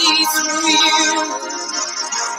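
A woman singing a worship song, holding long notes.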